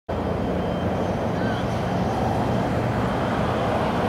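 Steady road-traffic noise with the low hum of an idling vehicle engine.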